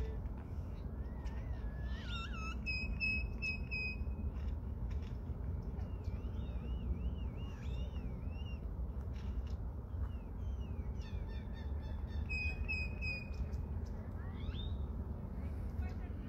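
Birds calling with whistled, chirping notes: a cluster of calls about two seconds in, a run of rising-and-falling notes midway, and more calls and a rising whistle near the end, over a steady low rumble.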